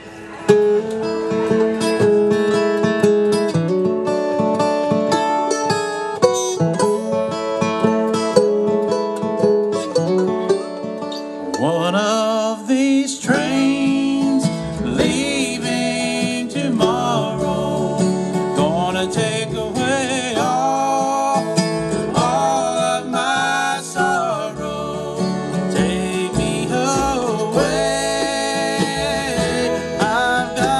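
Live acoustic bluegrass band playing. Picked strings open the tune, and about halfway in the upright bass joins under a lead line of sliding, wavering notes.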